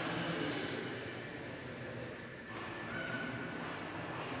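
Ballpoint pen drawing a curve on paper: a soft, steady scratching.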